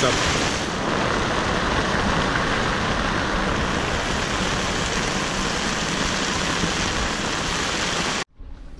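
Steady rush of storm wind and rain around a sailboat's cockpit under its canvas bimini, with no let-up.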